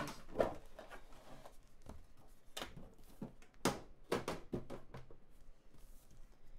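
Packaging being handled on a tabletop: a series of irregular knocks and clicks as a trading-card box is opened and the inner card box is taken out, the loudest knock a little before four seconds in.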